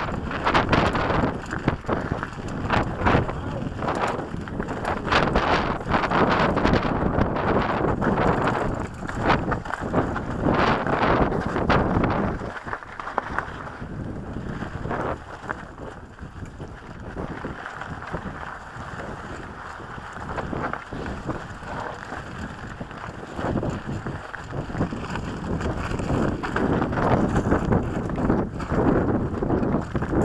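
Wind buffeting the microphone of a camera on a moving mountain bike, over tyres crunching on loose rock and gravel and the bike rattling and knocking over bumps. It eases off in the middle and builds again near the end.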